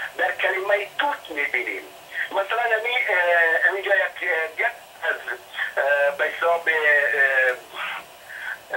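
Speech only: a man talking continuously.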